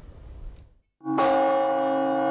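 A large church bell of Valaam Monastery is struck once about a second in and rings on, low and solid, with many steady overtones. It is part of the morning peal that opens the festive service.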